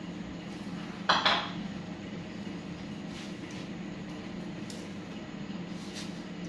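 A short clatter of a hard object, like a dish or utensil, being handled or set down about a second in, followed by a few faint clicks, over a steady low hum.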